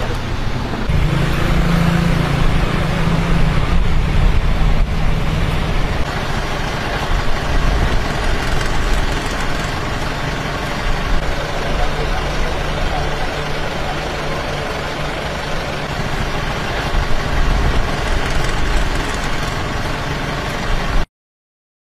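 Road traffic and vehicle engines running at the roadside, with a low steady engine hum that comes and goes, under indistinct voices.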